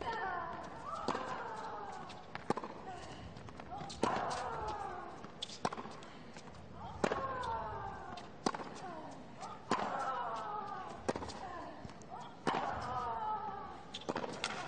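Tennis rally on a hard court: a racket strikes the ball about every one and a half seconds, around ten shots in all, and one player lets out a falling grunt with her shots.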